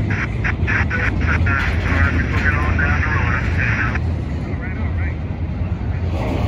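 Double-stack intermodal freight cars rolling past at close range: a steady low rumble of wheels on rail, with a high warbling wheel squeal over it. A series of sharp clacks comes in the first second and a half.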